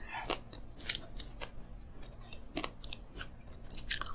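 Close-miked chewing of food, with scattered sharp crackles and clicks.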